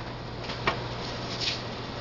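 Steady low background hum with a single sharp click about two-thirds of a second in and a brief soft rustle a little later: small handling sounds as a sugar container is picked up.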